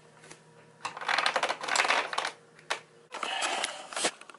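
Clicks, clatter and rustling as a digital bathroom scale is handled on a tile floor and then stepped onto. There are two louder stretches of rustling and a few sharp clicks, one near the end.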